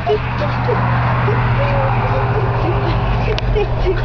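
A person's voice holding a steady low hum, a toaster noise made by mouth while the 'toaster' heats, with short squeaky vocal sounds and murmuring over it.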